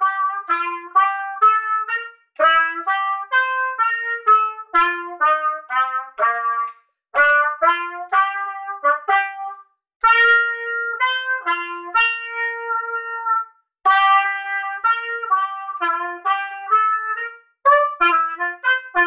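Solo trumpet playing a school song melody in short, separate notes, in phrases with brief breaks for breath between them.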